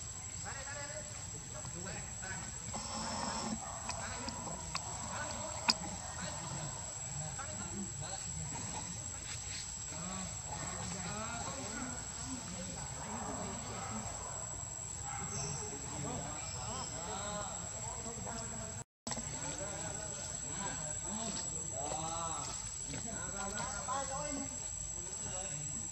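Steady high-pitched insect drone over the forest, with faint, scattered, rising-and-falling vocal calls. There is one sharp click about six seconds in, and a brief total dropout of sound just before the end.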